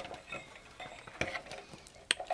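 Faint clinks and light knocks of a sheet-metal power-supply chassis being turned over by hand, with one sharper click about a second in.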